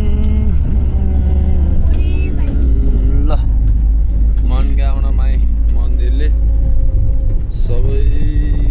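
Steady low rumble of a bus's engine and road noise, heard from inside the passenger cabin, with people's voices over it.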